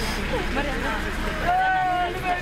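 Mourners crying and wailing in grief over a steady crowd murmur. Near the end a voice rises into a long, held wail.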